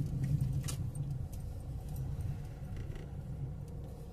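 Car cabin noise while driving slowly: a steady low engine and road rumble, with a few faint light clicks.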